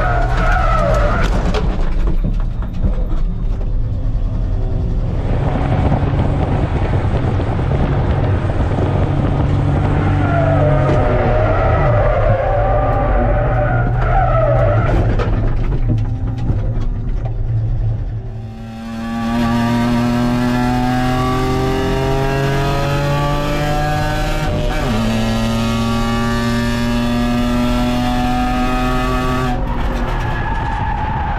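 A racing kei car's engine running hard in the cabin, with tyres squealing through corners near the start and again about a third of the way in. After a brief dip, another kei race car's engine climbs steadily in revs under acceleration, with one gear change about two thirds of the way through.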